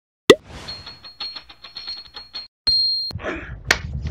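A string of short electronic sound effects: a sharp plop at the start, then a high steady tone under a rapid run of clicks, then a short loud high-pitched beep and a single click near the end.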